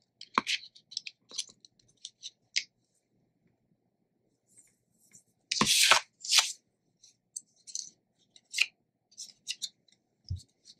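Paper and cardstock pieces being handled on a cutting mat: short, scattered rustles and taps, with a louder rustle and a thump about six seconds in as a paper frame is set down on the mat.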